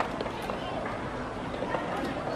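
Indistinct voices over a steady noisy background, with a few faint clicks.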